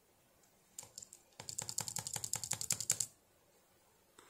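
Typing on a computer keyboard: a few key clicks about a second in, then a fast run of keystrokes lasting about two seconds.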